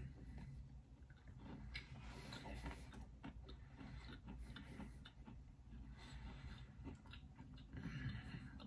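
Faint chewing of a bite of soft frosted sugar cookie, with small irregular mouth clicks.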